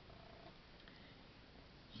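Domestic cat purring faintly: a low, steady rumble.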